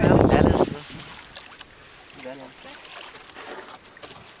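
Water sloshing around a woven bamboo coracle as a wooden paddle works it, quiet after a loud rumble of noise that stops suddenly under a second in.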